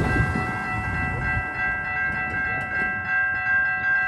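Electronic crossing bells ringing steadily at a railroad grade crossing whose signals are falsely activated by a track-circuit malfunction, with no train present. A car passes close by in about the first second and a half.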